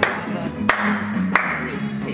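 Music with a steady beat and a sharp clap about every two-thirds of a second, three claps in all.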